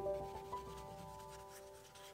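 Soft background music of held, ringing notes that fade away, under a faint scratchy rubbing of a paintbrush on watercolour paper.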